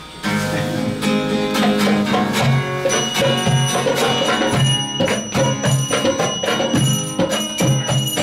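Acoustic guitar strummed as a song intro, joined about three seconds in by a steady beat of hand percussion with a bright metallic ring.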